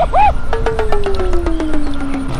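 Comic sound effect: a short tone that rises and falls, then a long tone that slides slowly downward, with a fast ticking of about eight ticks a second over it.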